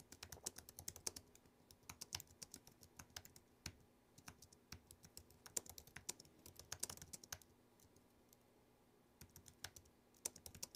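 Faint typing on a computer keyboard: quick runs of key clicks, with a pause of about a second and a half near the end.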